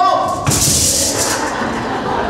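A held sung note from several voices ends about half a second in, cut off by a drum thump and a short burst of hand-percussion rattle lasting under a second.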